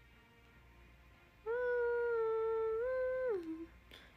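A young woman humming one held note for about two seconds, stepping up a little near the end, then sliding down and stopping.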